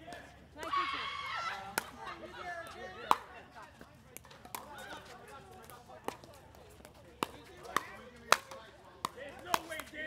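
Pickleball rally: paddles hitting the plastic ball back and forth, with its bounces on the court, as a string of sharp pops about half a second to a second apart. A voice is heard briefly about a second in.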